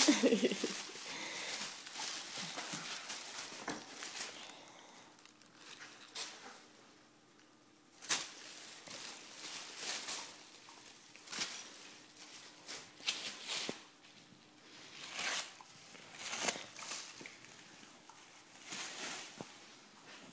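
Tissue paper crinkling and tearing in short, irregular bursts every second or two as a husky plays with it in his mouth.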